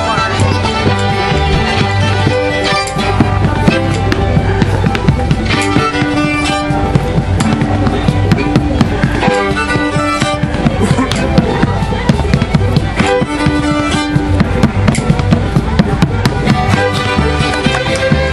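An acoustic string band of fiddle, five-string banjo and upright bass playing a lively tune, with a dancer clogging on a loose wooden board: rapid sharp taps of boot heels and toes on wood laid over the music.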